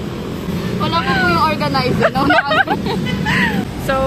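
A voice, rising and falling in pitch, over a steady low rumble of traffic.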